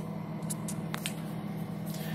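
Frost-free fridge freezer running with a steady low hum, and a few light clicks about half a second and a second in.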